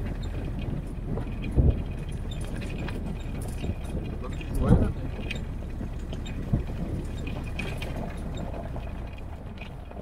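A Jeep driving slowly over a rutted dirt track: steady low engine and running-gear noise, with a couple of louder bumps or knocks, one under two seconds in and one about five seconds in.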